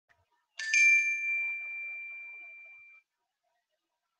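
A single bell-like electronic ding that strikes sharply and rings on one clear tone, fading away over about two and a half seconds.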